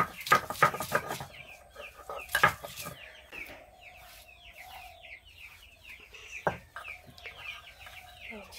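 Domestic chickens clucking and chirping: a quick, continuous run of short falling chirps. A few sharp knocks come at the start and twice more later.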